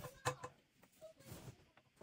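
Faint handling noise: a couple of soft knocks near the start, then light rustling of knit fabric as the sewn pants are lifted off the serger.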